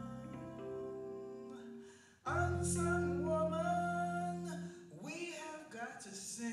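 Slow song sung to electric keyboard accompaniment: a held keyboard chord fades away, then a new chord and a sung line come in together about two seconds in and are held, with another entry near the end.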